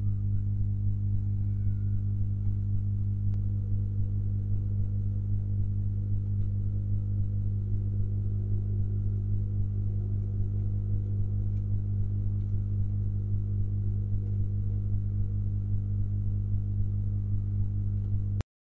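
Steady low electrical hum that does not change in pitch or level, with a few faint ticks.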